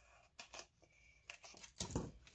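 A few faint snips and clicks of small paper snips cutting pieces from a sheet of foam dimensional adhesive, with a slightly louder knock near the end.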